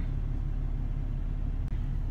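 Steady low rumble inside a parked car's cabin, the sound of its engine idling.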